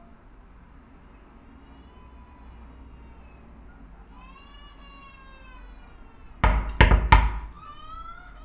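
A cat meowing, long drawn-out meows, then three loud knocks on a door near the end.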